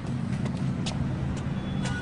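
Low, steady rumble of city street traffic, with a few short sharp clicks. Music with held tones comes in right at the end.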